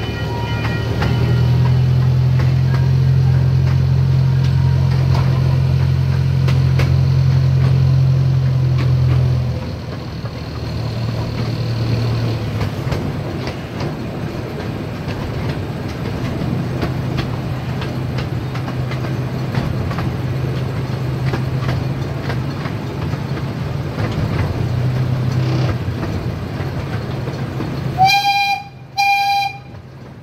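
A C.P. Huntington miniature train running, heard from a passenger car: a steady low engine hum, louder for the first nine seconds or so and then easing, with light clatter from the track. Near the end come two short horn toots.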